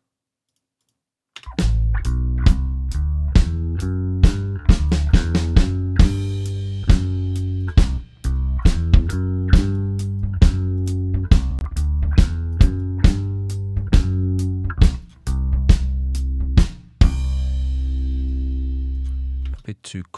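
Multitrack playback of a live band recording: bass guitar and drum kit playing together, low bass notes under regular drum hits. It starts after about a second and a half of silence and ends on a held, ringing note.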